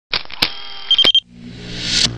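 Intro logo sound effects: a hissing swell broken by sharp clicks and a short pulsing beep about a second in. Then a whoosh builds steadily in loudness over a low hum toward the end.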